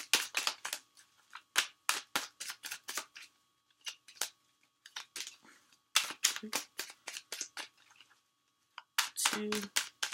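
A deck of tarot cards shuffled by hand: a run of sharp card clicks and flicks in irregular bursts, with two short pauses.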